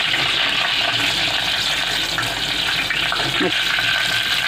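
Crushed garlic and curry leaves sizzling steadily in hot oil.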